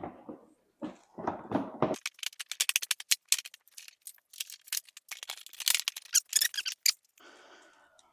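Plastic golf cart front body being fitted and handled: a few dull bumps and rustles in the first two seconds, then a rapid run of sharp plastic clicks and crackles for several seconds.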